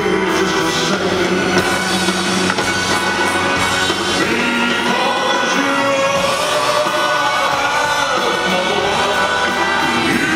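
Live band with electric bass playing while a male singer sings into a handheld microphone.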